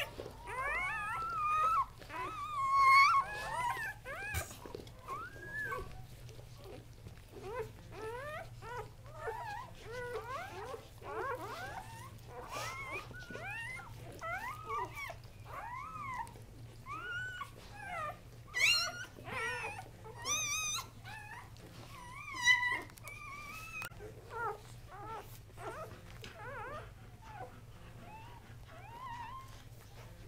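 Newborn Kuvasz puppies squeaking and whimpering almost without pause: many short cries that rise and fall in pitch, with a few louder squeals about 3 seconds in and again around 18 to 23 seconds.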